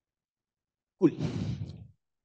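Speech only: a man's voice says a single breathy word, 'cool', about a second in, after a second of silence.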